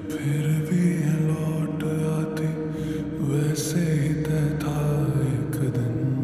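Slowed-and-reverb remix of a Hindi film song: long, drawn-out vocal notes swim in heavy reverb over a low sustained backing.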